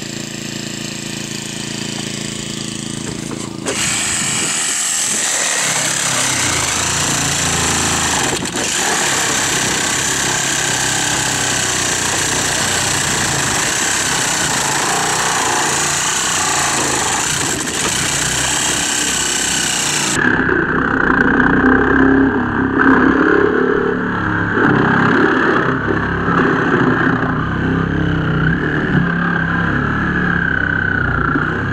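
Cordless reciprocating saw cutting through a car's windshield and roof pillars, over a small engine running steadily throughout. About two-thirds of the way through, the sound turns duller and louder in the middle range.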